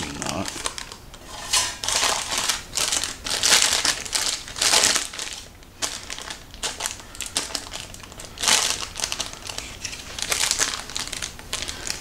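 Parchment paper crinkling and rustling in irregular bursts as it is peeled and folded back from a slab of chilled chocolate fudge that is still sticking to it.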